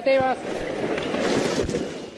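A damaged wooden building with a tiled roof giving way in an earthquake: a rushing, crumbling noise of falling timber, tiles and dust that starts about half a second in and runs on. Just before it, a person's voice cries out briefly.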